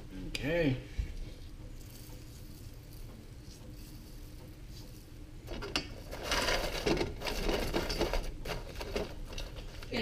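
A fork stirring popcorn in a metal pot, starting about halfway through: the popped kernels rustle and the fork scrapes and clicks against the pot.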